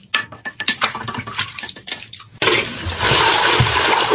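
A toilet brush scrubbing a porcelain toilet bowl in short, scratchy strokes, then, about two and a half seconds in, the toilet flushing with a loud, steady rush of water.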